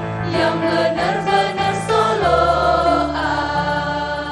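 A choir singing a song with musical accompaniment. About halfway through, the voices settle into one long held chord.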